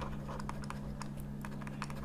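Plastic stylus tip tapping and scratching on a graphics tablet while writing by hand: a run of small, irregular clicks over a steady low electrical hum.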